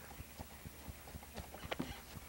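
Hooves of a led pack animal clip-clopping at a walk, a quick uneven run of soft knocks, several a second, mixed with the men's footsteps.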